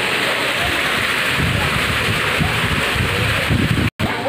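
Water from a tiered fountain splashing steadily into a pond, a dense even hiss, with low rumbling on the microphone from about a second and a half in. The sound drops out briefly just before the end.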